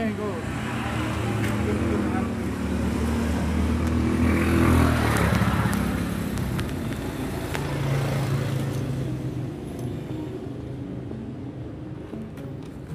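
A motor vehicle engine running nearby, getting louder to a peak about four to five seconds in and then fading.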